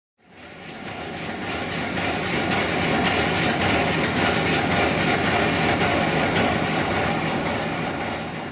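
Steady rumbling, clattering machinery noise that fades in over the first couple of seconds and holds, starting to fade out near the end.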